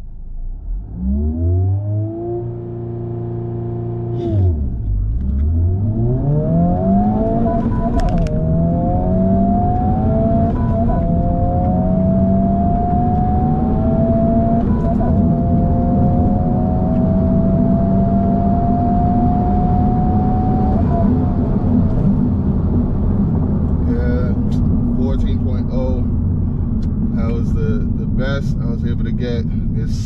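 Honda Civic Type R (FL5) 2.0-litre turbocharged four-cylinder heard from inside the cabin on a standing-start launch. The revs rise and are held steady for about two seconds, dip as the clutch is let out, then climb through the gears with three quick upshifts and a long pull in the last gear. About twenty seconds in the driver lifts off, and the engine falls back to a lower drone as the car coasts.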